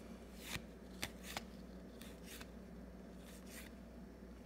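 Faint scrapes and ticks of paper baseball cards sliding against one another as a stack is flipped through by hand. There are half a dozen brief swishes spread across the few seconds.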